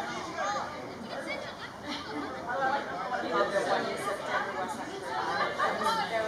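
Many overlapping, indistinct voices during a youth soccer match: players calling to each other on the field and sideline chatter, with no single clear talker.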